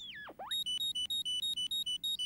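Toy-like cartoon metal detector beeping rapidly, about six beeps a second alternating between two high pitches, the signal that it has found a metal screw. A falling whistle-like glide comes just before the beeping starts.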